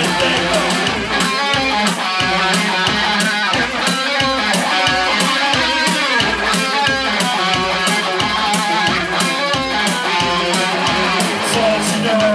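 Live synth-punk instrumental break, with no singing: fast, harsh electric guitar strumming over a synthesizer and a steady, fast drum-machine beat.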